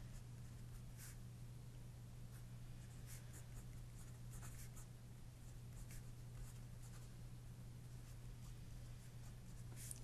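Pencil writing on paper: faint, irregular scratching strokes, over a steady low hum.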